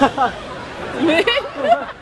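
Speech: voices talking, with chatter from people around.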